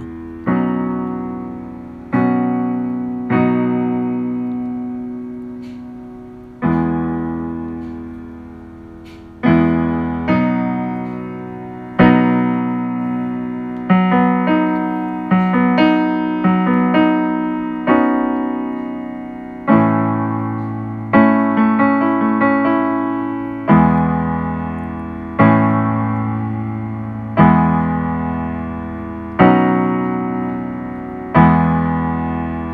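Electronic keyboard played with a piano sound: two-handed chords over bass notes, each struck and left to ring and fade. The chords come a couple of seconds apart at first and more often from about halfway through.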